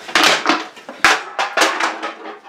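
A quick series of sharp crunching knocks, about five in under two seconds.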